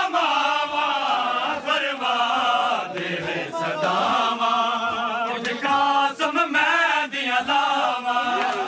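A group of men chanting a noha, a Shia Muharram mourning lament, in unison. A few sharp hits sound irregularly over the singing.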